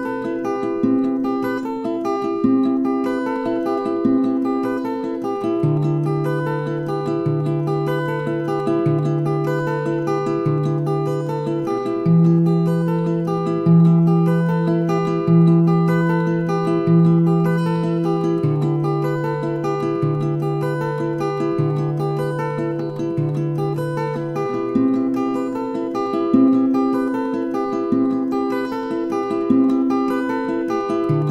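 Acoustic guitar with a capo, fingerpicked in a repeating arpeggio pattern through A minor, G, F and G chord shapes. Each chord lasts about six seconds, with a ringing bass note under steady picked treble notes.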